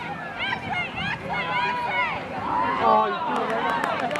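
Several high-pitched voices shouting and calling out over one another, the yelling of players and spectators during a game, with one louder shout about three seconds in.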